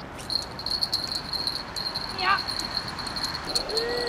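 Fishing reel being cranked to bring in a hooked fish: a steady high-pitched whir with faint ticking that starts just after the beginning.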